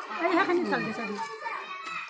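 Overlapping voices of a small crowd of women and children talking, one voice clearest in the first second, then fainter chatter.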